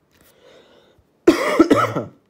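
A person coughing: a short, loud run of about three coughs in the second half.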